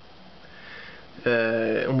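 A man sniffing softly through his nose: a short, noisy intake of breath in the first second.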